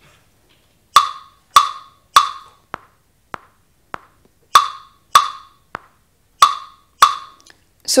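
Rhythm example from the Musical Ear Test: a sequence of wood-block beats about every 0.6 s. Some strokes are loud with a short ring and others short and faint, making a rhythmic pattern.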